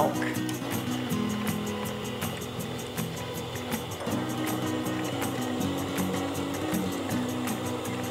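Electric stand mixer running steadily as it beats cake batter, under background music with held notes.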